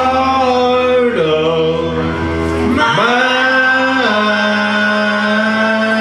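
A man singing karaoke into a handheld microphone, holding long, steady notes; the longest begins about three seconds in.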